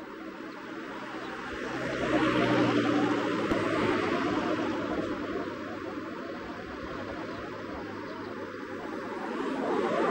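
Engine noise passing by: it swells about two seconds in and slowly fades.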